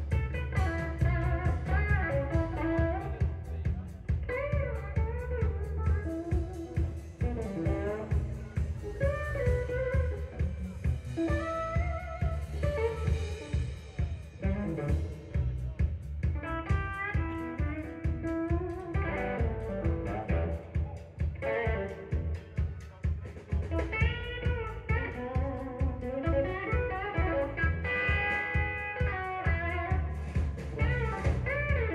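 Live blues-rock band playing an instrumental passage: an electric guitar lead with bent notes over drum kit and bass guitar.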